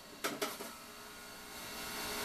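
Jack LaLanne electric juicer running steadily while beets are juiced, with a couple of sharp knocks about a quarter second in as the food pusher is pressed into the feed chute. The motor sound grows louder near the end.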